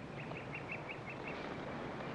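A bird calling in a quick run of about eight short chirps, several a second, that stops after about a second, over faint outdoor background hiss.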